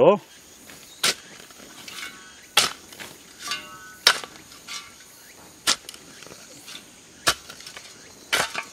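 A small hand tool chopping and scraping into stony soil, with sharp knocks about every one and a half seconds and fainter scrapes between them, as the mound's own earth is loosened for repair. Faint insects chirr steadily underneath.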